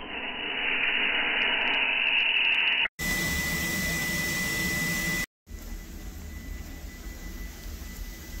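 Steam train running: a steady hiss and low rumble, muffled for the first few seconds, then cut abruptly into two more short shots of the same noise with a faint steady high tone.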